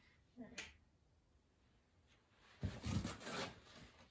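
Workshop handling noises: a single sharp click about half a second in, then quiet, then a few soft knocks and rustles in the last second and a half.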